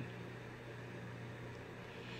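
Quiet room tone: a faint, steady low hum under a light hiss, with no distinct event.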